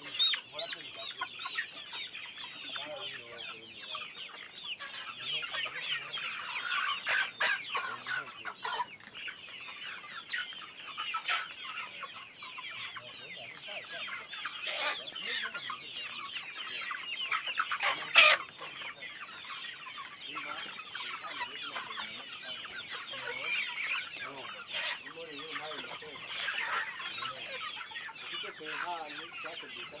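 A large flock of chickens clucking continuously, many birds overlapping into a dense chatter, with one short sharp loud sound about eighteen seconds in.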